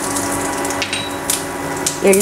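Black sesame seeds sizzling in hot ghee in a small steel tempering ladle, with a few scattered pops as they start to splutter: the tadka for the rasam.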